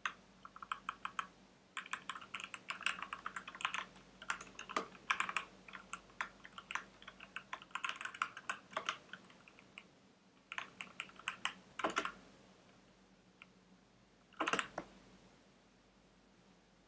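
Computer keyboard being typed on in quick bursts of key clicks with short pauses, ending with a louder cluster of strokes near the end.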